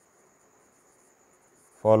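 Faint, steady high-pitched whine over quiet room tone; a man starts speaking near the end.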